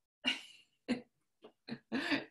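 A woman making a run of short, breathy vocal bursts, like coughs or chuckles, the first and loudest about a quarter second in and four more spaced unevenly after it.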